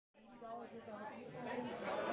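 Indistinct chatter of several voices fading in from silence and growing louder.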